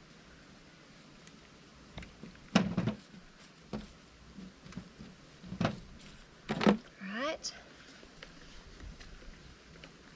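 A handful of short splutters and rustles as bleach is squirted from a squeeze bottle and the shirt fabric is scrunched against a glass tabletop; the two loudest come a little under 3 s and a little under 7 s in. A brief rising pitched sound follows near the seven-second mark.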